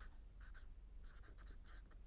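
Faint marker pen strokes on a white board: a quick run of short scratches, several a second, as a word is written out by hand.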